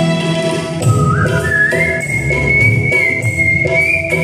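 A man whistling a melody into a microphone over live band accompaniment of keyboard, bass guitar and drums. The whistled line comes in about a second in, climbs in pitch and holds one long high note.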